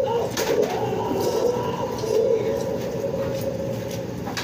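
Plastic fork and spoon clicking against a plate a few times during eating, over a steady, low, wavering background murmur.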